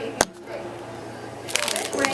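A single sharp knock just after the start. Then, for the last half second, quick crinkling and crackling as the plastic wrapper of a trading-card rack pack is handled.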